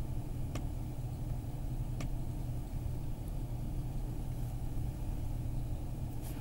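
Steady low hum or rumble with two faint clicks, one about half a second in and one about two seconds in.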